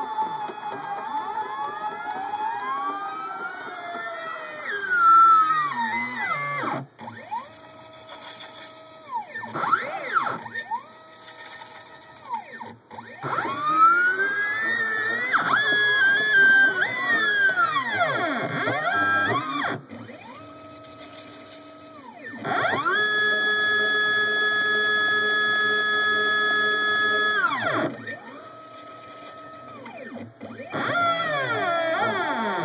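NEMA 23 stepper motors of a home-built CNC pen plotter whining as the axes move. The pitch glides up and down on curved strokes, and on straight moves it ramps up, holds a steady tone and ramps down again, with short quiet pauses between moves. The longest steady tone lasts about five seconds, in the second half.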